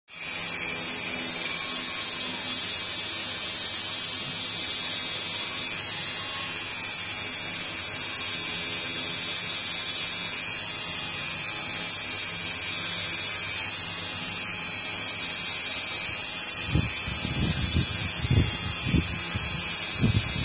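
Electric tattoo machine buzzing steadily as its needle works colour into the skin of a back tattoo. A few dull low knocks come near the end.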